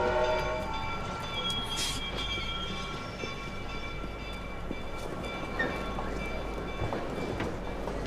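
Railway station sound with a train: a steady low rumble and hiss, faint steady high tones, a short hiss about two seconds in, and scattered light knocks. Piano music fades out at the start.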